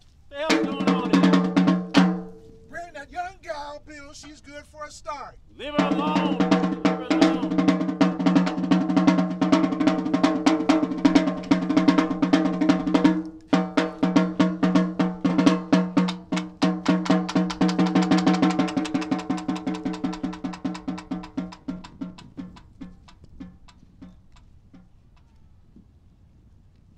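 Snare drum played with sticks in fast, even strokes under a held pitched tone. The tone wavers like a sung holler in the first few seconds, then holds with one short break. Drum and tone die away over the last few seconds.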